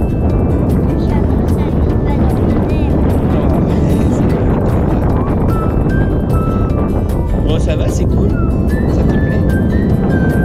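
Steady rush of airflow over the camera microphone in paraglider flight, a dense low noise with no letup, with music playing underneath and a few short high tones near the end.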